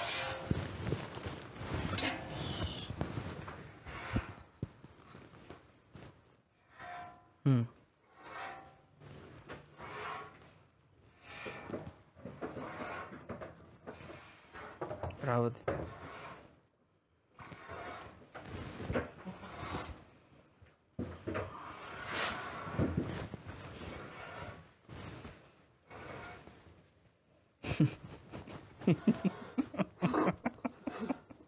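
Low, intermittent talk and murmurs broken by pauses, with scattered rustles and small knocks.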